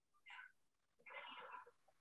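Near silence, broken by two faint short sounds: a brief one about a third of a second in, and a slightly longer one lasting about half a second from about a second in.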